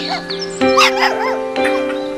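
Background music with steady held chords, over a dog's short high-pitched yips, a few rising-and-falling calls about half a second in.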